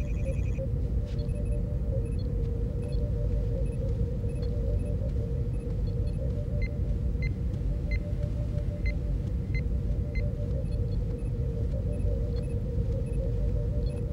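Science-fiction starship background ambience: a steady low rumble and hum with a held tone, dotted with short electronic computer bleeps. A quick warbling chirp comes at the start, and a run of single bleeps about every half second comes in the middle.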